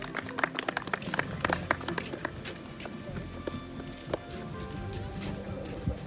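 Scattered hand clapping from a small crowd, thickest in the first couple of seconds and thinning out after, over faint background music.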